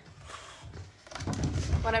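Wooden desk drawer being shifted and turned on a work table: a short, irregular scraping and knocking about a second in, then the start of a woman's speech.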